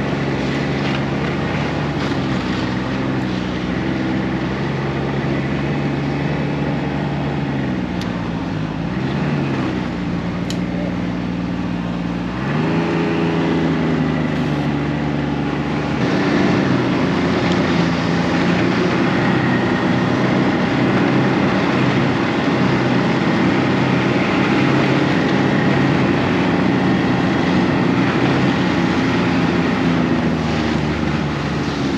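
Snowmobile engine heard from the rider's seat, running steadily along a trail; its pitch dips briefly around 8 to 10 seconds in, then climbs as the throttle opens about 12 seconds in. From about 16 seconds in it is louder and harsher, running at higher speed.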